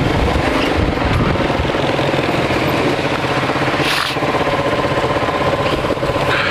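Kasinski Comet GTR 650 V-twin motorcycle engine running at low speed in slow traffic and settling into a steady, pulsing idle as the bike comes to a stop. A brief hiss comes about four seconds in.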